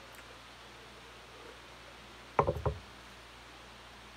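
A man gulping beer from a glass: three quick swallows close together, about two and a half seconds in.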